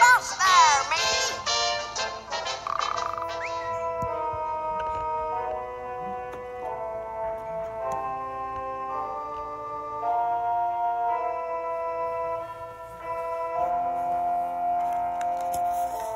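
Slow music of held chords with an organ-like sound. A few wavering, swooping tones sound in the first second or so.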